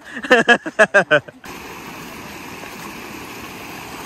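A person's voice for about the first second and a half, then, after an abrupt change, the steady rush of a shallow rocky river running over stones.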